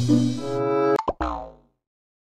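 Editing music with held notes, then a sharp click about a second in and a short cartoon sound effect that falls in pitch and fades away quickly.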